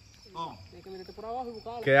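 Insects chirring in a steady, thin high tone from the riverside vegetation, with a man's voice speaking over it from about half a second in.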